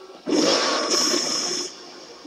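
Sound effect from an animated fight: a loud rush of noise that starts about a quarter second in, brightens in the middle and fades after about a second and a half.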